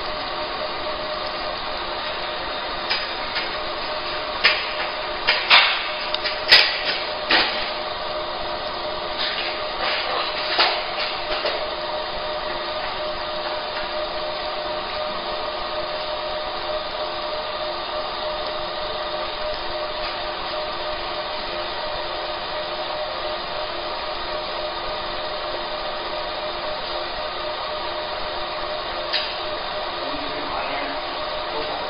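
Fiber laser marking machine running while it marks stainless steel: a steady hum made of several held tones. A cluster of sharp knocks and clicks comes about 3 to 11 seconds in, and one more near the end.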